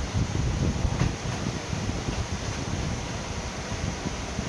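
Pedestal electric fan running: a steady rush of air, with a faint click about a second in.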